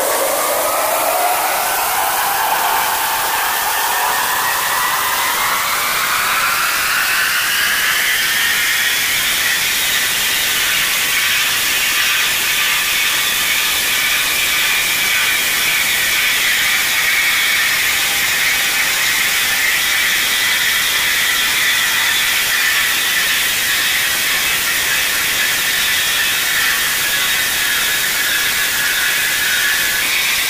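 Electric motor of a marble floor grinding and polishing machine running, its whine rising steadily in pitch over the first nine seconds or so and then holding high and steady over a constant hiss.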